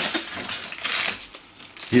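Brown paper bag and plastic food packaging crinkling and rustling as a hand rummages inside and pulls items out. It is loudest in the first second and dies down after.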